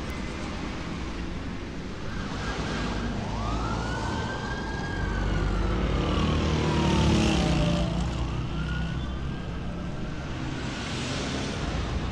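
City street traffic with cars passing, and a siren wailing in slow rising and falling sweeps: one long sweep starting a few seconds in, then a second near the end.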